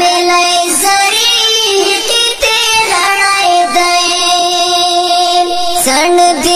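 A Pashto tarana being sung, the voice holding long drawn-out notes, one near the start and a longer one in the second half.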